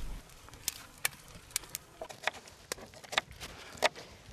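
A small knife cutting and peeling the dry papery skin off an onion, heard as a handful of sharp, irregular crackling clicks over quiet.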